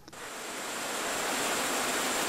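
A steady hiss that swells over the first second and then holds, with no rhythm or clicks in it.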